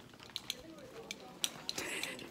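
Faint, distant chatter of voices in a quiet indoor space, with about half a dozen sharp little clicks scattered across it.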